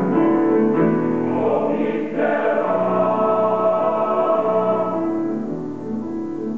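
Male high school choir singing held chords in several parts, with piano accompaniment.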